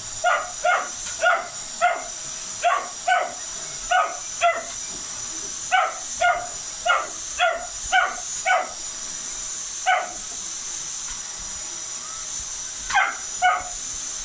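An English Springer Spaniel puppy yapping at a running canister vacuum cleaner: short, high-pitched barks come in quick runs of about two a second, with a pause of a few seconds before a last flurry near the end. Under the barks the vacuum's motor whines and hisses steadily.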